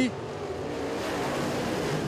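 Dirt-track modified race cars running on the track: a steady rush of engine noise with a faint engine tone in it, building a little toward the end as cars come down the front stretch.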